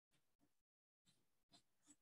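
Near silence: faint room noise that cuts in and out abruptly, with a couple of faint soft ticks in the second half.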